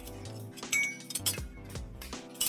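Background music with a steady beat, over iron blacksmithing tools clinking as they are handled: one sharp ringing metallic clink about a third of the way in, then a few lighter clicks.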